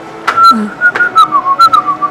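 A person whistling a short tune, the single pitch wavering down and back up, with a few sharp clicks along the way.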